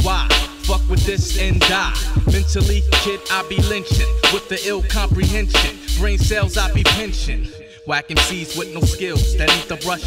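Hip hop track: a rapper over a drum beat with a heavy bassline. The beat briefly drops out about three-quarters of the way through, then comes back.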